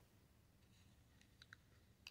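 Near silence, with a few faint light clicks in the second half: plastic press-on nails being handled in a clear plastic compartment organizer.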